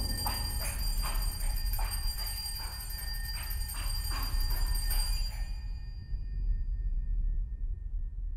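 Chamber ensemble playing a contemporary film score: high sustained ringing tones over soft, repeated knocks, dying away about five and a half seconds in and leaving only a low rumble.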